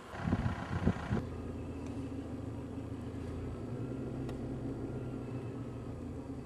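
A few low thumps in the first second, then an engine running steadily at an even idle.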